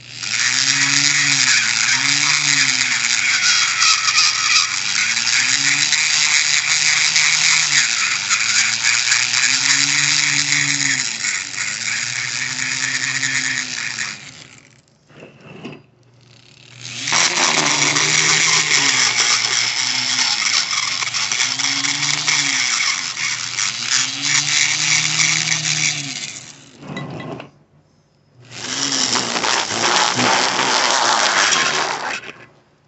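Handheld rotary tool with a small wire brush running against the aluminium cylinder head around the valve seats, cleaning and blending the combustion chambers. It runs in three long bursts: about fourteen seconds, then about nine, then again near the end, with short pauses between. Its low tone wavers up and down as it works.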